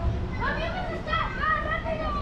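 Children's voices: high-pitched calls and chatter from a group of kids, starting about half a second in.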